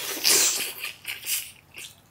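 Close-miked eating sounds of a man biting into and sucking at a spicy boiled pork trotter: wet, noisy slurping and chewing, loudest in the first second, then two shorter bursts.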